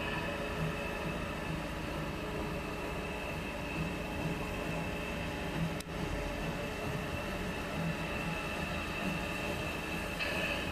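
Narrow-gauge steam locomotive approaching from a distance, with low beats recurring about once a second under a steady high-pitched tone. A single sharp click comes just before the six-second mark.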